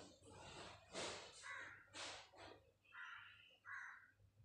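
Faint cawing of crows, several short harsh calls, with a few soft rustling noises in between.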